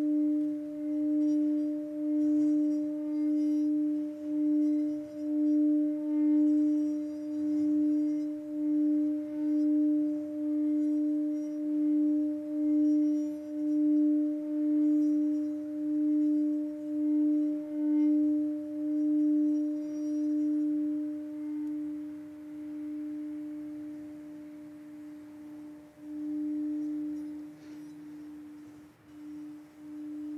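Singing bowl kept sounding by rubbing its rim: one steady low tone with a faint octave above it, pulsing about once a second. It fades after about twenty seconds, then swells again briefly near the end.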